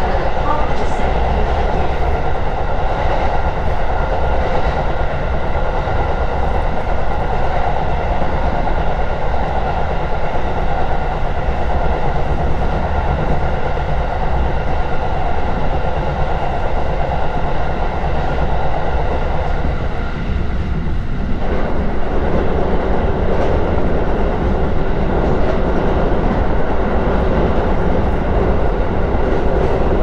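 Running noise heard inside an electric commuter train moving at speed: a steady rumble of wheels on rail with steady tones laid over it. The sound's character shifts briefly about two-thirds of the way through.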